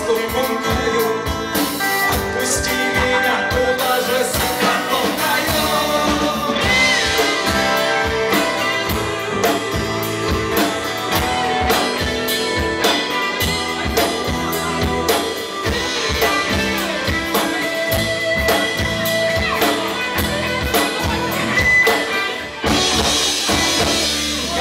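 Live rock band playing: electric and acoustic-electric guitars with bass over a drum kit keeping a steady beat.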